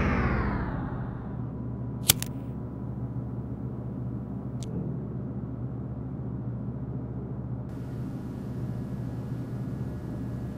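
Music stops and its tail fades out within the first second, leaving a steady low hum of room tone. A single sharp click comes about two seconds in.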